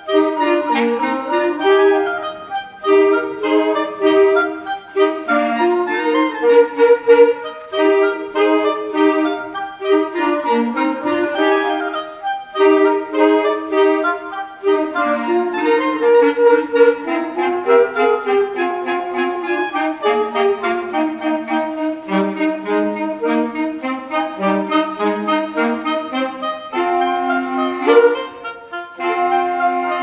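Woodwind ensemble of flute, oboe, clarinets and saxophones playing a classical allegro together, with many quick, short notes moving in several parts at once.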